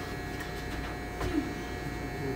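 Corded electric hair clippers running with a steady buzz, trimming a small child's hair near the ear.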